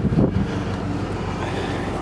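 Wind blowing across the camera microphone: a steady, low rushing noise.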